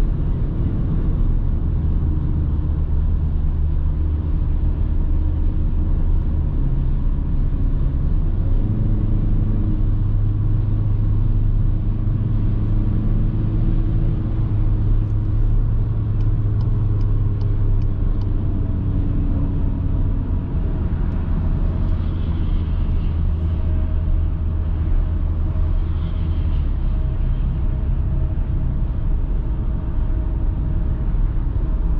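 Cabin sound of a 2021 VW Passat 2.0 TDI's four-cylinder turbodiesel at autobahn speed: a steady low engine drone under tyre and wind noise while the car slows from about 130 to under 100 km/h.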